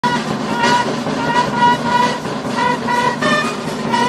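Ceremonial brass band playing a melody on trumpets, with bass drum and snare drum beneath.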